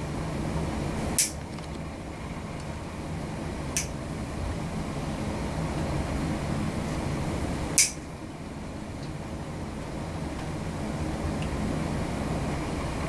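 Three sharp snips of nail nippers cutting through a thick, ingrown toenail that curves almost 180 degrees, a few seconds apart, the last the loudest. Under them runs a steady low hum.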